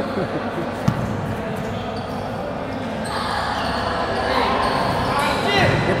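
A basketball bouncing on an indoor court in a large gym hall, with one sharp bounce about a second in, during live play. Players call out in the background, louder near the end.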